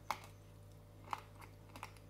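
Biting into and chewing fairy bread, buttered white bread covered in sugar sprinkles: a sharp crunchy click at the first bite, another about a second later, then a few smaller crunches.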